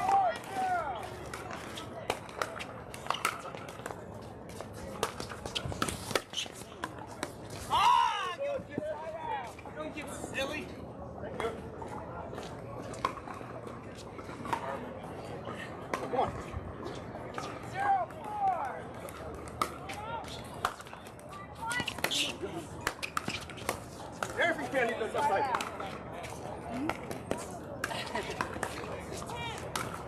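Indistinct voices of people around outdoor pickleball courts, one louder call about eight seconds in, with scattered sharp pops of paddles hitting the ball on nearby courts.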